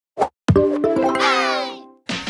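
Short logo jingle: a brief pop, then a chord struck about half a second in and held, with a shimmering rising sweep of tones over it that fades out near the end.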